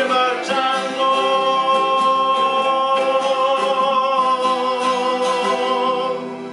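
A man singing to his own strummed acoustic guitar, holding one long final note for about five seconds until the song ends near the end.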